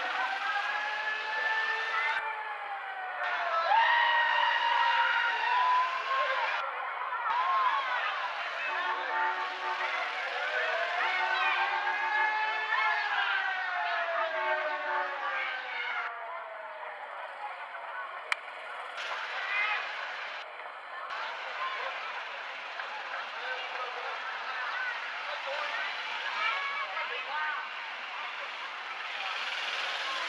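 A siren wailing, its pitch slowly rising and falling in two long sweeps in the first half, over steady outdoor crowd and street noise that carries on alone after the sweeps end.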